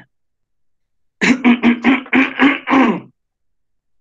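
A person's voice in a quick run of about seven short syllables on a steady pitch, starting about a second in and lasting about two seconds.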